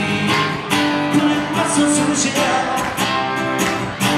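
Live rock song played by an acoustic guitar and a Telecaster-style electric guitar, with steady strumming under sustained guitar notes.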